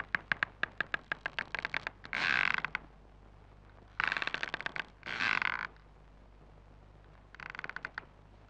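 Old wooden door creaking on its hinges as it is slowly pushed open: a stuttering run of clicks that drags into longer creaks, in several separate pulls with short pauses between.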